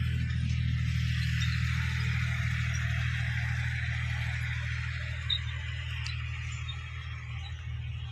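A tractor's diesel engine running steadily with a low, even drone, over a soft hiss.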